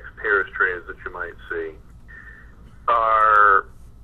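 A man lecturing: speech in the first second and a half, then a long drawn-out vowel about three seconds in.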